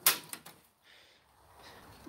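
A steel Harbor Freight tool chest drawer pulled open: a short metallic clatter within the first half second.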